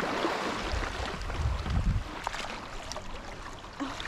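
Shallow sea water splashing and churning around a person wading through it, with a low rumble about one and a half seconds in.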